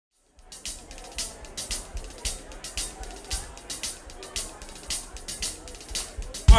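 A funk band's drum kit playing a steady groove live on stage, with sharp hits about twice a second over a low bass line. It comes in after a brief silence at the very start.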